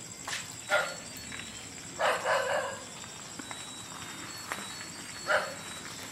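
Three short animal calls stand out over a faint steady high whine: one about a second in, a longer one at about two seconds, and one near the end.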